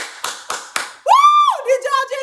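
Hands clapping quickly, about four claps a second. About a second in, they give way to a loud, very high-pitched squeal from a woman's voice, then a few quick wordless vocal sounds.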